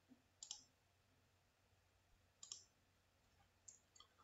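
Near silence with three faint computer-mouse clicks, each a quick double click, spread across a few seconds.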